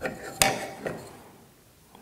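A single sharp knock of a tool against plywood on the workbench, then a fainter tap, as the square and plywood piece are handled for marking.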